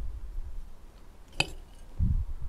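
A metal spoon clinks once, sharp and ringing, against a ceramic bowl about halfway through, amid soft low thumps of handling at the start and near the end.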